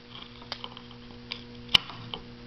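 A faint steady hum with three sharp clicks, the last, about three-quarters of the way in, the loudest.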